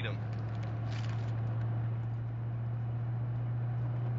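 Steady low hum of a car's cabin while driving, with a brief rustle about a second in.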